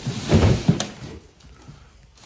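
A small hinged access door in an attic knee wall being pulled open: a loud scraping rustle in the first half second, then a sharp click, followed by quieter handling noise.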